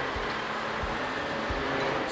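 Cat 988K XE wheel loader running steadily under load as it lifts a heavy crusher rotor on chains, an even mechanical drone with a few faint low knocks.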